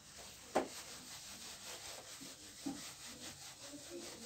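A handheld whiteboard eraser wiping marker writing off a whiteboard in quick back-and-forth strokes, with one sharp knock about half a second in.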